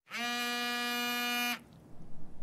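Telephone ringing tone as a call goes through: a single steady, buzzy tone lasting about a second and a half, then it stops.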